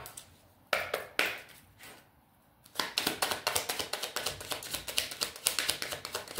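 A deck of tarot cards being shuffled by hand: a few separate card snaps in the first second and a half, a short lull, then about three seconds of rapid, continuous clicking of the cards.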